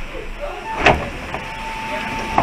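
Articulated Mercedes-Benz Citaro G city bus braking to a halt at low speed. A steady high squeal from the brakes sets in under a second in and holds, with a sharp loud thump about a second in.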